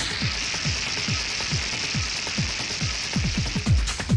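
Techno DJ mix in a breakdown: a steady four-on-the-floor kick drum about two beats a second under a sustained hissing noise swell, with the hi-hats dropped out. The full beat comes back in harder right at the end.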